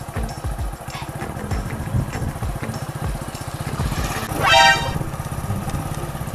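Small commuter motorcycle running steadily as it rides toward the listener. A brief high-pitched tone about four and a half seconds in is the loudest moment.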